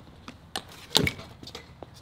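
Cut-out aluminium scooter deck flexing under a rider's weight and giving a few sharp cracks, the loudest about a second in. It sounds like it's snapping: the sign of a small crack forming and spreading at the edge of the cut.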